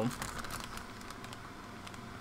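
Faint crinkling and light ticks of a clear plastic bag being handled, with a plastic model-kit runner moving inside it.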